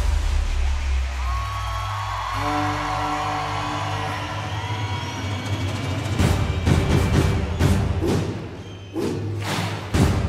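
A live band with a brass section plays the opening of a march: a low drone, then a held brass chord from about two seconds in. Heavy drum strikes come in over the second half.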